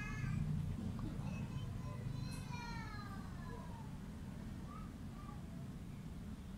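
A domestic cat meowing: the end of one meow at the start, then one long meow that falls in pitch about two seconds in.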